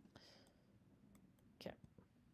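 Near silence: faint room tone with a soft breath shortly after the start.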